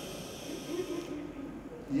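Breath blown by mouth through a thin plastic tube into a Strandbeest's pneumatic valve, a breathy hiss for about the first second that then fades; the air passes straight through, showing the valve open.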